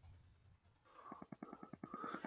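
Near silence, then about a second in a faint run of rapid, evenly spaced clicks, about eight a second.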